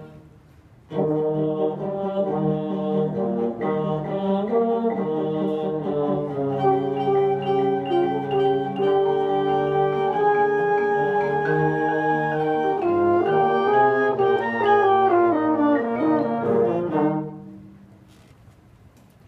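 A student orchestra of strings and brass playing a slow, sustained passage in held chords, starting about a second in and stopping shortly before the end. Its closing crescendo comes on too suddenly, in a classmate's view.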